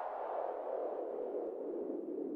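Outro of an electronic track: a quiet band of filtered hiss slides slowly downward in pitch, with no beat under it.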